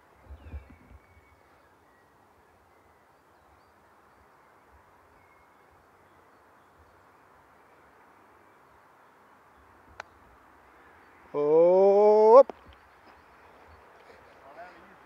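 Quiet outdoor air on a golf course. About ten seconds in comes a single faint sharp click, the club striking the ball on a chip shot. About a second later a person gives a drawn-out call that rises in pitch for about a second, the loudest sound here.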